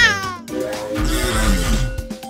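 Cartoon backing music with a short, high squealing cry near the start that rises and then falls in pitch. In the second half comes a low whooshing rumble.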